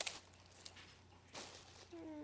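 Handling noise of an iPod touch held and moved about in the hand: a sharp click at the start, faint ticks, and a short rustle about one and a half seconds in.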